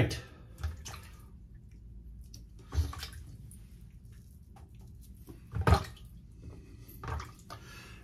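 A few scattered water splashes and drips at a sink, short and separate, the loudest about two-thirds of the way through.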